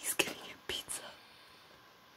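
A person whispering: two short whispered bursts within the first second.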